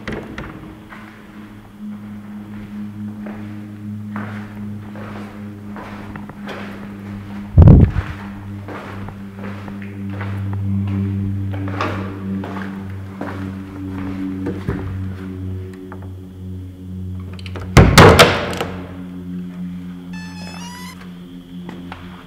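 Dark, droning background music of low held tones, broken by two loud, heavy thuds, one about eight seconds in and one about eighteen seconds in, with faint small knocks between them.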